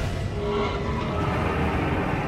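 Countdown-intro sound design: a rushing whoosh with a heavy low rumble, layered over music.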